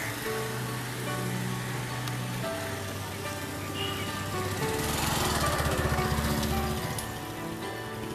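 Background music of held notes over a steady low drone, with a louder, noisier swell between about five and seven seconds in.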